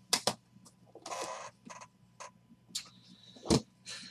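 Handling noises from an aluminium card case and a plastic card holder: two sharp clicks at the start, a short rustle about a second in, small scattered clicks and one louder click near the end.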